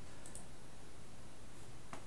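Computer mouse clicks, a couple of faint ones, shortly after the start and near the end, over a steady background hiss.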